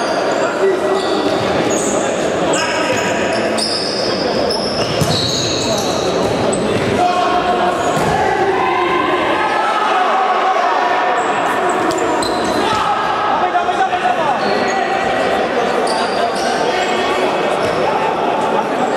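Futsal ball thudding and bouncing on a sports-hall floor, with short high squeaks of court shoes and indistinct shouts of players, all echoing in a large hall.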